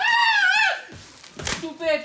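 A high-pitched, wavering cry from a person's voice lasting most of a second, followed about a second and a half in by a sharp knock and then another short vocal sound.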